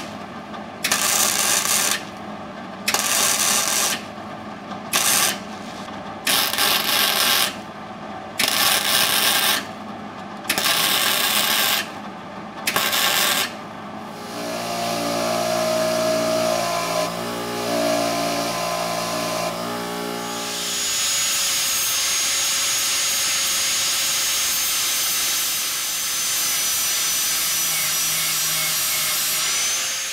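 Wire-feed welder laying a series of short welds on 1/8-inch steel, each a crackling burst of about a second. About halfway through, a bench grinder runs, and from about two-thirds of the way in it grinds the welded piece steadily against a flap disc, with a high whine over the grinding.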